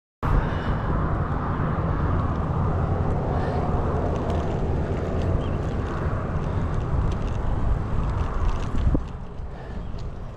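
Wind rumbling on an action camera's microphone as a road bike is ridden beside a road with traffic. The rumble drops off abruptly about nine seconds in.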